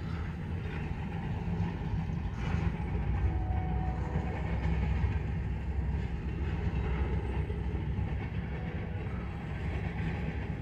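Freight train of TTX boxcars rolling past, a steady low rumble of car wheels on the rails.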